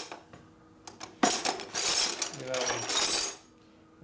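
Metal wrenches clattering and clinking as they are rummaged through in search of the right size. The rattle starts suddenly about a second in and stops shortly before the end.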